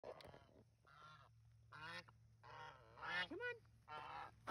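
Domestic geese honking: a string of short calls that grow louder toward the end, the loudest a rising-then-falling honk about three and a half seconds in.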